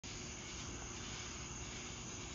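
Faint, steady outdoor night ambience: an even hiss with a low rumble underneath.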